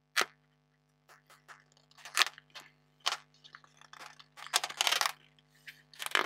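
Stiff card and paper being handled: a sharp click just after the start, then a run of scrapes and rustles as a folded card letter is slid out of a cardboard sleeve, busiest near the end.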